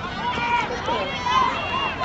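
Several voices shouting and calling out at once during a soccer match, overlapping and unclear, with louder calls about half a second and a second and a half in.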